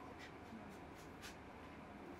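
Faint ticks and rustles of fingers handling paper drying sheets while pressed flowers are picked off them: about four small ticks in the first second and a half, over quiet room tone.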